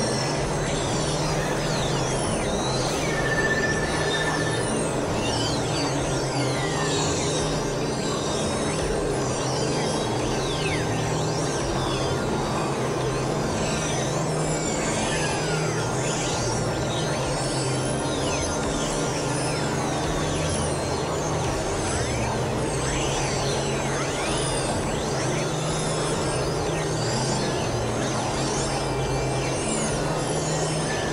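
Dense, layered experimental electronic music, several tracks overlaid at once: a steady low drone under a thick wash of noise, crossed throughout by many quick high pitch sweeps rising and falling.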